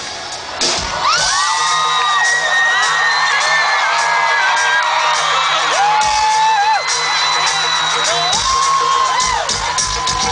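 Arena concert crowd screaming and whooping in many short, high, held shrieks over a steady low note from the PA, with scattered hits of the backing track. The shrieks start about a second in.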